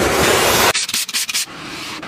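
A cloth wiping over car interior surfaces. A loud, even rubbing cuts off suddenly under a second in, followed by softer, quick wiping strokes across leather seat upholstery.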